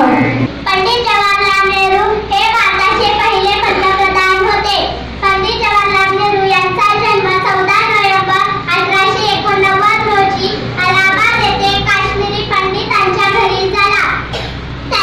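A schoolgirl singing a song into a microphone, in long held phrases with short breaks between them.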